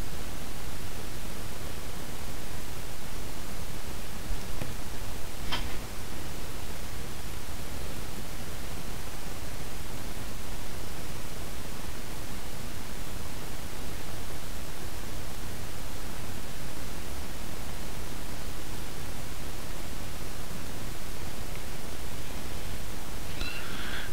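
Steady hiss of the recording's background noise, with no speech. There is one faint click about five and a half seconds in.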